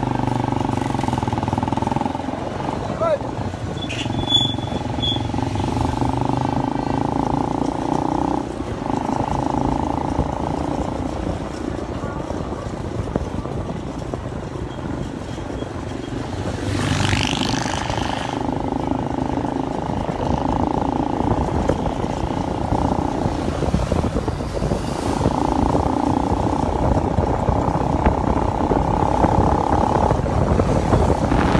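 Motorcycle engine running steadily as it rides along a street, with a short rising high-pitched sound about 17 seconds in.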